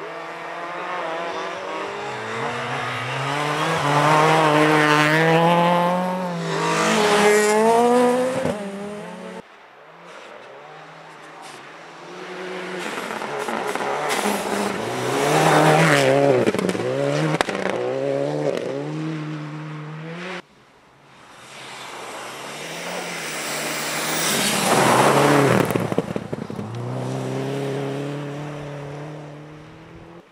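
Rally cars at full throttle passing one after another in three separate passes. Each engine revs up and drops back in steps through the gear changes, growing louder to a peak and then falling away; each pass cuts off suddenly. The first car is a Ford Fiesta ST and the second a Subaru Impreza.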